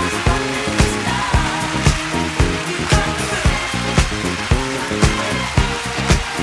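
Background music with a steady, driving beat of about two strikes a second over a bass line.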